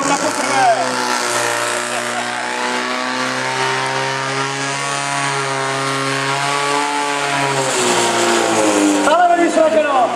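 Portable fire pump's engine running hard under load, a steady pitched drone that drops slightly in pitch near the end, while it feeds water to two hose lines.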